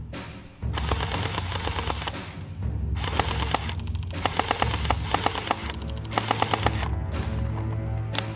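Electric gel blaster firing several full-auto bursts of rapid, evenly spaced shots, with background music with a beat underneath.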